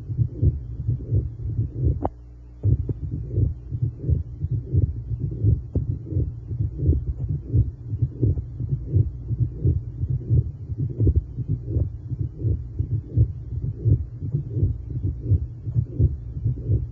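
Pericardial friction rub heard through a stethoscope: short scratchy strokes repeating in a steady rhythm with the heartbeat over a low hum, with a brief gap about two seconds in. The rub is the sign of inflammation of the pericardial membrane.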